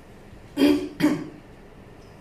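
A woman clears her throat with two short, loud coughs into a handheld microphone, about half a second apart.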